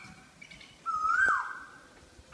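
A bird calling once, about a second in: a whistled "oh wow" that holds a steady pitch, then slides down.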